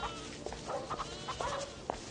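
Farmyard livestock bleating in several short calls, village ambience.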